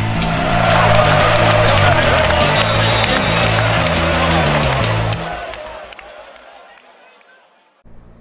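Short rock music sting, electric guitar over a stepping bass line with a rushing whoosh effect. It breaks off about five seconds in and fades away to near silence.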